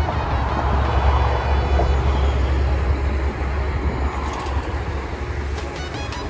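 Steady low rumble of road traffic on a busy bridge, with a hiss over it, swelling slightly in the first couple of seconds.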